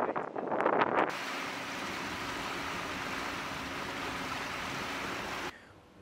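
Wind buffeting the microphone on a moving pontoon boat, then, about a second in, a steady rushing of wind and water with a faint low hum, which drops away shortly before the end.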